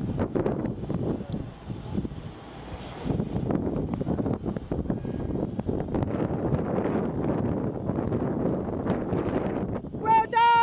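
Wind buffeting the microphone: a steady rushing rumble with frequent crackles, a little louder from about three seconds in.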